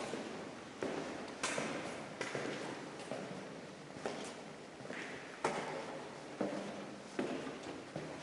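Slow, uneven footsteps on a hard floor, about one step a second, echoing in a bare empty room.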